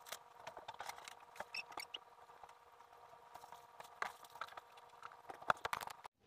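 Light, irregular taps and clicks of someone in socks moving about on a hardwood floor close to the microphone, with a sharper knock near the end, over a faint steady hum.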